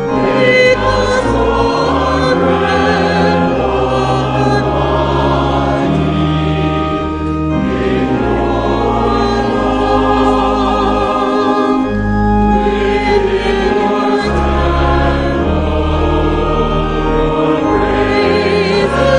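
A church hymn sung by a cantor and the congregation together, over an accompaniment that holds sustained low notes, changing every second or two.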